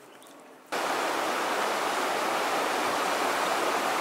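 A shallow rocky stream rushing over stones, a steady water noise that cuts in abruptly about a second in.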